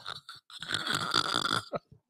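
A woman gasping for breath in helpless laughter: one long, hoarse, breathy sound lasting about a second, starting about half a second in.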